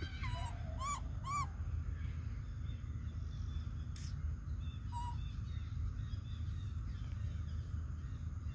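Macaque coo calls: three short calls in the first second and a half, each rising and falling in pitch, then one brief call about five seconds in. A steady low rumble runs underneath.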